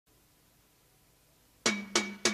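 Near silence, then glass bottles struck twice with a stick about a third of a second apart, each hit ringing briefly.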